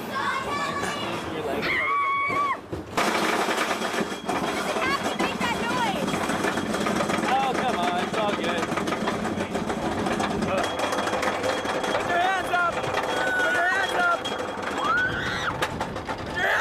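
Roller coaster train rattling along a wooden track, with wind rushing over the microphone and riders shouting. The rattle and wind start suddenly about three seconds in, after a few shouts.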